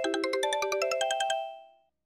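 Mobile phone ringtone: a quick run of bright chiming notes that plays for about a second and a half and then dies away.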